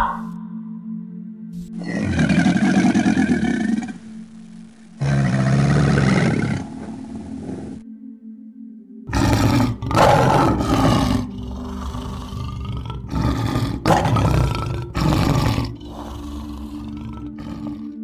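Male lion roaring: a run of five or six loud roars with short gaps through the second half. Before it come two shorter, separate sounds of a few seconds each.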